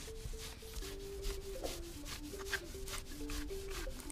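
Raw sesame (simsim) seed being ground by hand on a traditional grinding stone: a hand stone rubbed back and forth over the seed in quick, regular gritty strokes, giving the coarse first grind for pressing out oil. Quiet background music with a simple melody plays underneath.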